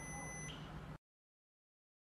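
A single high electronic beep from the Lucky FF1108-T fish finder's beeper, lasting about half a second, then cut off to dead silence about a second in.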